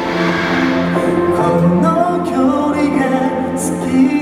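Pop song with male vocals over a PA system: a member of a boy group singing live into a handheld microphone over a backing track.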